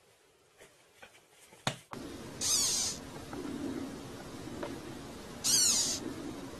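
A caterpillar being handled gives two short, high squeaks, about half a second each: one a little before halfway and one near the end.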